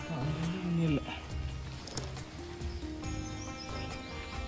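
Devotional background music with steady held tones over a soft low pulse. In the first second a short sound with a wavering, gliding pitch stands out as the loudest thing.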